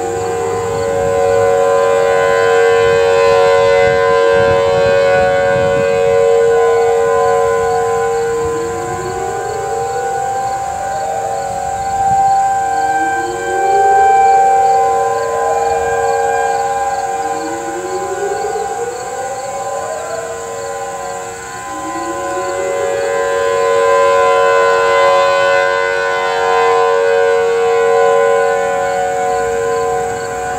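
Several distant outdoor warning sirens across a town sounding together in a monthly test, among them a Federal Signal Thunderbolt 1003, a Whelen 2803 and Federal Signal 2001-SRNBs. Their steady tones overlap and swell and fade in loudness, with a rising sweep in pitch about every four seconds. The 2001-SRNB in view has failed to sound.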